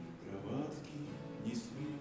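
Acoustic guitar playing chords on its own, an instrumental passage of a song with the chords ringing on.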